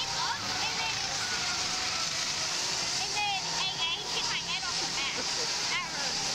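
People laughing and chattering in short high squeals over a constant rushing hiss.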